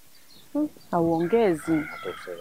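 A rooster crowing: a few short notes about half a second in, then a long held note near the end.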